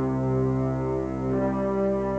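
Electronic keyboard playing sustained chords in a deep, horn-like voice, the notes shifting about a second in.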